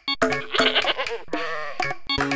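A goat bleating with a wavering call, over background music.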